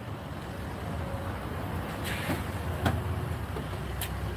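Door of a Ford police SUV unlatched and swung open, a sharp click just before three seconds in, over a steady low vehicle rumble.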